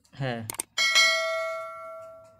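Subscribe-button animation sound effect: two quick mouse clicks, then a bright bell ding that rings out and fades away over about a second and a half.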